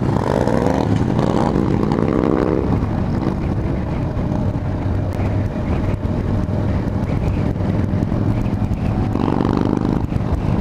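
Motorcycles riding in a group: the steady engine hum and road noise of a sport-touring bike under way. The engine notes rise in pitch as the bikes pull away through an intersection over the first few seconds and again near the end.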